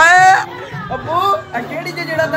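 A loud, short voice call rising in pitch right at the start, then people talking over the chatter of a room full of people.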